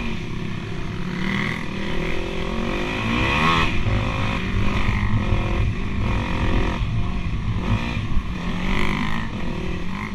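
Dirt bike engine running under the rider, its pitch rising and falling as the throttle is opened and eased along the trail, with wind noise on the microphone.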